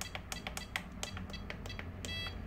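Flysky FS-i6X RC transmitter trim buttons pressed in quick succession, each press giving a short beep from the transmitter, about six or seven a second, as the trim is stepped.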